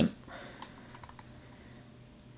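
A few faint computer keyboard clicks over quiet room tone.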